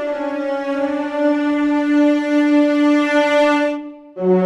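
Sampled French horns doubled by a cello section (the Spitfire Audio Abbey Road One Grand Brass 'soaring legato' patch) played from a keyboard: one sustained note held for nearly four seconds and released just before the end.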